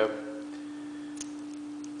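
ZoneX zone-damper motor running with a steady hum, its top gear spinning free of the rest of the gear train. A single click comes about a second in as the gear tries to grab: its chewed-up, missing teeth keep it from engaging.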